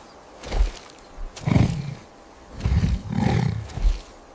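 Deep animal calls, repeated several times, each lasting under a second.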